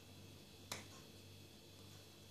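A single sharp click about two-thirds of a second in, against near silence: the Nokia Lumia 820's snap-on plastic back cover being pried at.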